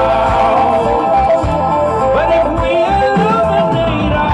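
Live funk band playing through a PA: electric guitars, bass guitar and drum kit, with sliding melodic lines over a steady groove.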